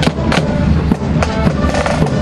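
Accordion band playing a march while parading, with held accordion notes over sharp snare-drum strikes and bass drum.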